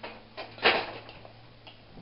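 Kitchenware being handled while filling is scooped by hand from a glass mixing bowl over a metal baking pan: a couple of light knocks, then one sharp, loud knock, with faint taps after.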